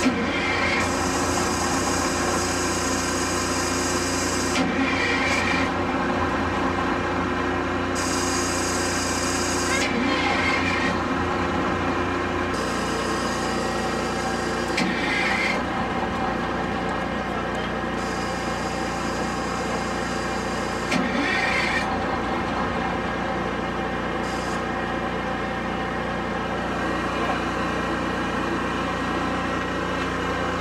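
Detroit Diesel 71-series two-stroke diesel being cranked over on its starter in repeated bursts of about four seconds, with short breaks between. It does not catch: air has got into the fuel line after an injector was changed.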